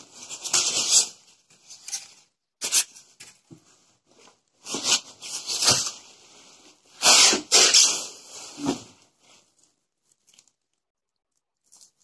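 Cardboard box packaging and plastic wrap handled by hand: several separate bursts of rustling and scraping as packing is pulled out of the box, falling quiet for the last couple of seconds.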